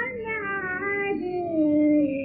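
A woman singing a Hindustani raga without words, holding long notes that slide smoothly between pitches; about halfway through, the melody sinks lower and settles on a held note.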